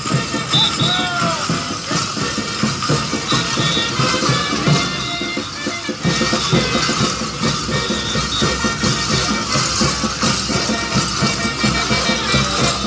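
Band music for a saqra dance, with many held melody notes over a steady, regular drum beat.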